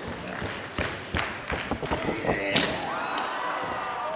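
A plywood barbed-wire board slammed down onto a wrestler several times, the heavy thuds ending in the loudest hit about two and a half seconds in as the board cracks. Shouting voices rise around the hits.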